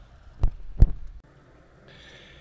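Two dull thumps a little under half a second apart, the second the louder.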